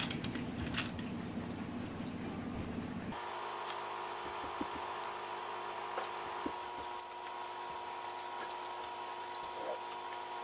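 Soft rustling of cotton fabric being smoothed and pinned by hand, with a few faint clicks of straight pins. About three seconds in, a low background rumble stops suddenly and a faint steady hum takes over.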